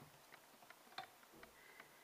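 Near silence, with faint, irregular small clicks and ticks from fingers handling the thread and hackle feather at a fly-tying vise; the sharpest click comes about a second in.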